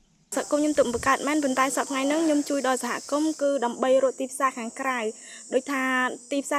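A woman talking in a higher-pitched voice over a steady, high-pitched drone of insects. The voice and the drone begin together, suddenly, just after the start.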